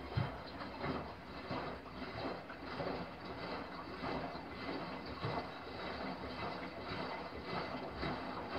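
Miele Softtronic W5820 front-loading washing machine in its wash cycle: water swishing and splashing in the turning drum in repeated irregular surges.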